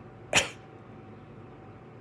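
A single brief, sharp breath noise from the man about a third of a second in, over faint room tone.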